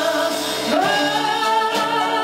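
A woman singing a Greek popular song live with band accompaniment, piano and bouzouki among it. She holds a long note that glides up to a higher held note just under a second in.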